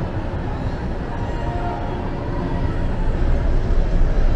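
Steady, gusty low rumble of wind buffeting the microphone on an open cruise-ship deck, mixed with the ship's own running noise.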